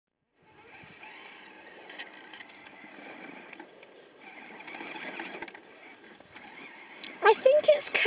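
Absima Sherpa RC rock crawler's electric drivetrain running faintly and steadily as it crawls up a rocky slope. A high voice speaks loudly near the end.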